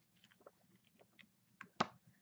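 Faint rustling and soft taps of a paperback coloring book's pages being turned, then a single sharp slap near the end as the book is closed.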